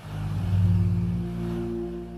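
A swelling whoosh sound effect that builds to a peak about half a second in and settles into a held low chord of several steady tones, beginning to fade near the end.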